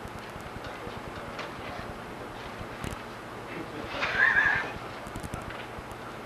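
A person's brief wavering vocal sound with no words, about four seconds in, over low room noise. A faint knock comes just before it.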